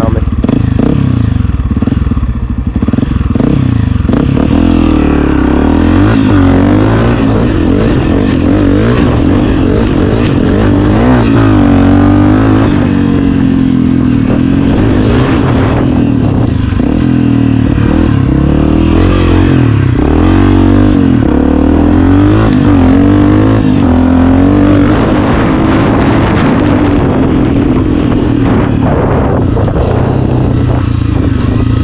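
Honda CRF250F dirt bike's single-cylinder four-stroke engine being ridden hard, its revs rising and falling over and over with the throttle.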